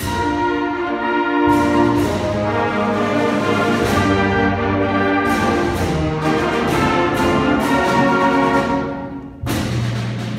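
Concert band playing a full, brass-led passage with repeated percussion strikes. It starts abruptly, drops away briefly near the end, then comes back with a loud chord.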